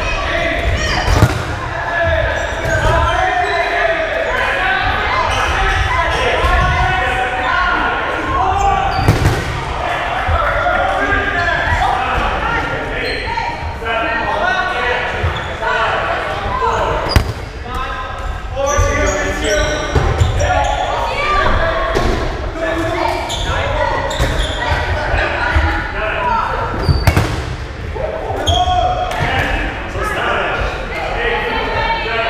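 Rubber dodgeballs being thrown and bouncing on the wooden gym floor, with several sharp smacks, over the continuous shouting and chatter of players. Everything echoes in a large gymnasium.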